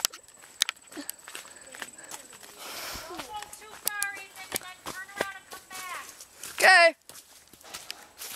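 Footsteps of someone walking in sandals down a leaf-strewn dirt trail: irregular crunches, scuffs and clicks. High-pitched voices call out briefly in the middle, and there is a short loud call near the end.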